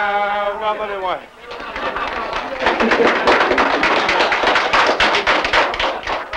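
Men's voices holding the last note of a French-Canadian folk song, which falls away about a second in. It is followed by a group of people clapping their hands in lively applause.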